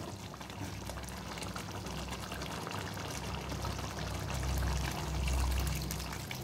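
Curry simmering in a steel pan with a steady low bubbling, then a thin stream of milky liquid poured into it, the pouring getting louder over the last two seconds.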